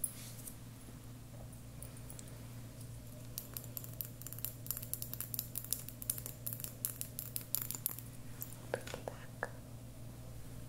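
Fingers handling a small amber glass dropper bottle close to the microphone: many faint, quick clicks and taps from about three seconds in until near eight seconds, over a steady low hum.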